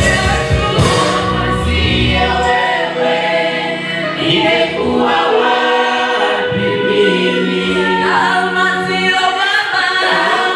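Gospel worship team singing a Swahili praise song in harmony into microphones. A low accompaniment under the voices drops away about two and a half seconds in, leaving the singing almost bare.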